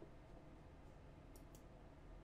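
Near silence: quiet room tone with two faint, short clicks in quick succession about a second and a half in.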